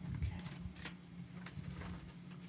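A few faint, irregular clicks and knocks over a steady low hum.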